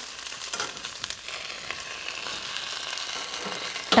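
Halved eggplant and tomatoes frying in hot mustard oil in a kadhai: a steady sizzle with scattered crackles.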